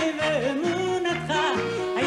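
A woman singing a Hasidic song medley into a microphone, her melody bending and wavering, over a band accompaniment with a steady bass beat.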